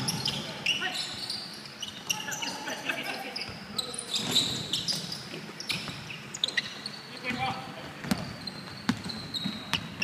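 A basketball being dribbled and bouncing on a wooden gym floor during a game, heard as scattered sharp bounces, with players' voices calling out in a large hall.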